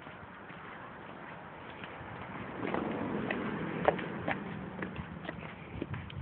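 Footsteps on grass and gravel, with scattered light clicks and rustle from a handheld phone, louder for a couple of seconds in the middle.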